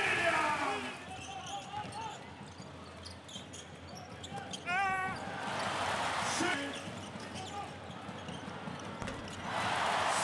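Live basketball game sound: the ball bouncing on the court, a short squeak about five seconds in, and noise from the crowd rising twice, about six seconds in and again near the end.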